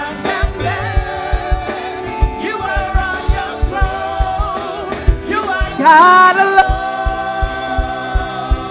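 Gospel praise team singing a worship song in parts, backed by a live band with a steady kick-drum beat. The voices swell louder about six seconds in.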